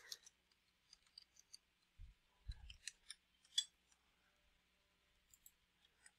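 Faint, scattered clicks of a computer keyboard and mouse, the loudest about three and a half seconds in, with two dull low thumps around two seconds in.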